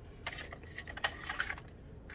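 A clear plastic drawer pulled out of a small-parts cabinet, with a quick run of light clicks and rattles as the Dremel accessories inside shift against the plastic.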